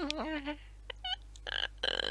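A person's voice making silly non-word noises: a drawn-out, wobbling croak in the first half second, then a few short, high squeaky chirps about a second in, and a brief breathy hiss near the end.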